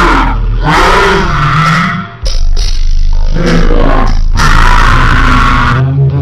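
Heavily distorted, pitch-lowered voice and music, a deep growl over a steady low hum, breaking off briefly about two seconds in.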